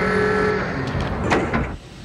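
Film sound effect of a power loader exoskeleton starting to move: a sudden loud mechanical whine with a few steady tones, giving way to servo whirring and hissing, with a clank about a second and a half in.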